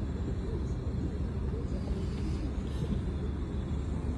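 Steady low rumble, with faint voices in the background.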